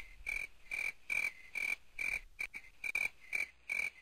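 Rhythmic chirping at one steady high pitch, about two chirps a second: a comic "empty room" night-creature sound effect.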